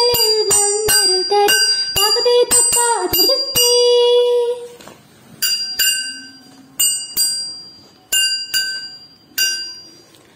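A Margamkali song: high voices singing in unison over sharp rhythmic strikes about twice a second, ending on a long held note after about four seconds. Then small cymbals ring out alone, struck mostly in pairs, each strike ringing and fading before the next.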